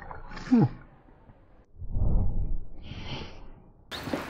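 A man's brief "hm", then a low rushing whoosh lasting about two seconds with a hiss near its end: lighter fluid on charcoal in a grill bowl flaring up as it is lit.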